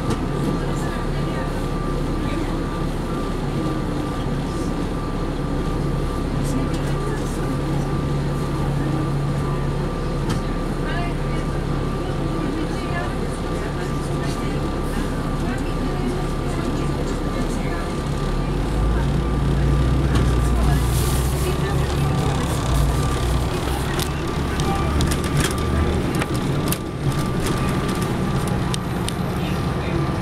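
Cabin sound of a Neoplan AN459 articulated diesel transit bus: steady engine drone with a constant high whine. About two-thirds of the way through the engine note deepens and grows louder as the bus pulls away in traffic.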